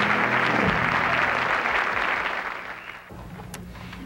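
Studio audience applauding at the end of a song, with the band's last chord dying away in the first second. The applause fades out about three seconds in.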